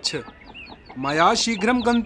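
Farmyard sound effects: hens clucking with quick, high little chirps, then a long, low, drawn-out call that rises and holds, starting about a second in.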